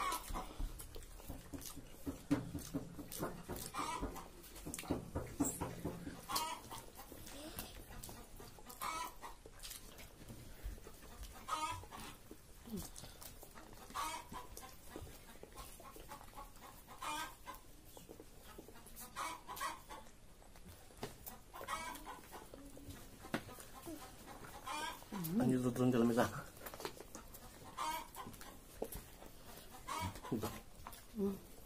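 Short animal calls repeating every two to three seconds, with a louder, lower voice-like sound about twenty-five seconds in.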